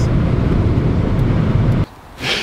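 Steady wind and road noise heard inside the cabin of a VW Tiguan 1.5 TSI at high autobahn speed, heaviest in the low end. At around 180 km/h the wind noise is plainly noticeable. It cuts off abruptly near the end.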